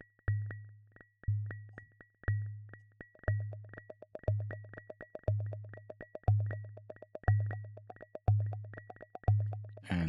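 Resonant filters held near self-oscillation in a VCV Rack software modular patch, pinged by clock triggers. A low bass-drum ping decays about once a second under a fast, uneven patter of short high-pitched pings, and a mid-pitched pinged tone joins about three seconds in.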